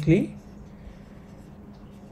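A man's narration trails off in the first moment, then only faint, steady microphone hiss of a quiet room.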